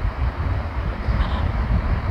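A low, steady rumble with a light hiss and no speech: background noise on the microphone.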